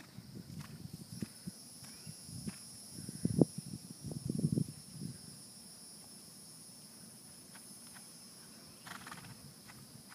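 Horse trotting on grass: soft, muffled hoofbeat thuds, most of them in the first half, against a steady high-pitched hum.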